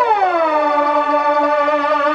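Techno: a synthesizer tone glides down in pitch over about the first second, then holds steady with a slight wobble over sustained synth notes.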